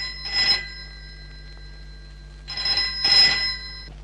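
Desk telephone bell ringing twice, each ring lasting a second or two: an incoming call, answered just afterwards.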